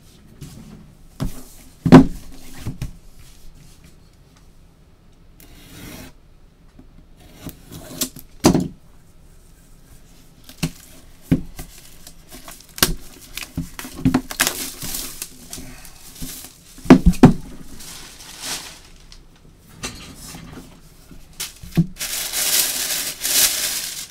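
A cardboard shipping box being handled and opened: scattered knocks and scraping cardboard, with a sharp knock about two seconds in the loudest. Near the end comes a stretch of loud plastic-bag crinkling as the wrapping inside is reached.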